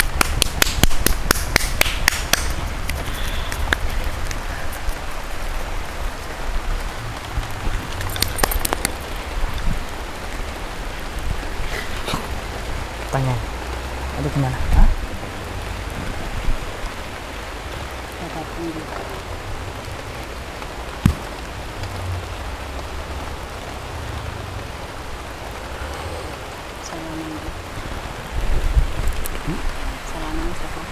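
A steady wash of noise like light rain, with a low rumble as of wind on the microphone. Two quick runs of sharp clicks, like rapid claps, come in the first two seconds and again about eight seconds in. A faint voice can be heard muttering now and then.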